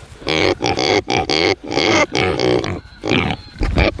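Young pigs grunting close up, a run of short calls about two a second.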